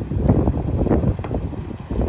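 Wind buffeting the phone's microphone: a loud, uneven low rumble.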